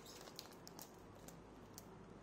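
Near silence with a few faint, light ticks about half a second apart: fingers handling the clear plastic protective film and seal sticker on the laptop's underside.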